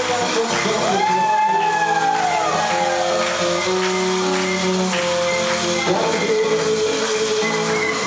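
Live samba music with guitar, with a long sliding note that rises and falls about a second in.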